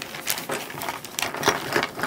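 Thin plastic shopping bag crinkling and rustling as it is handled and opened, with irregular crackles, the sharpest about a second and a half in.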